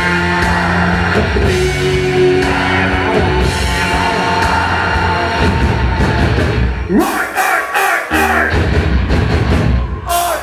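Heavy metal band playing live, with distorted electric guitar, bass and drums. About seven seconds in the low end drops away and the band plays sharp, accented hits.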